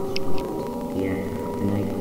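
An ambient droning soundtrack of sustained tones with lower, wavering pitched sounds beneath them. A brief, sharp, high sound stands out about a quarter of a second in.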